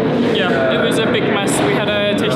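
Voices talking over a steady background murmur.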